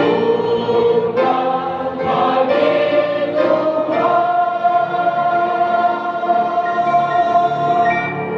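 Grand piano accompanying a group of voices singing a gospel song, the voices holding one long note through the second half.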